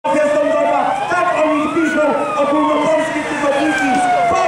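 A siren wailing: its pitch rises for about two seconds, then falls slowly, with voices underneath.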